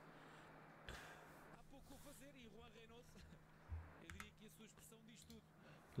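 Near silence, with faint match commentary in Portuguese from the highlight video playing at low volume, and a light click about a second in.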